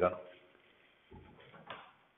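Faint sliding and a soft click from a built-in wooden wardrobe's drawer and door being handled, starting about a second in.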